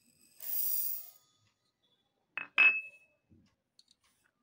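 Black mustard seeds poured from a steel bowl into a steel mixer-grinder jar, a short rattling hiss, followed about two and a half seconds in by two sharp ringing clinks, the loudest sounds, then a few faint ticks.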